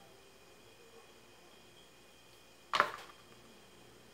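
A small plastic glue bottle set down on a wooden craft board: one short, sharp knock about three seconds in, otherwise quiet.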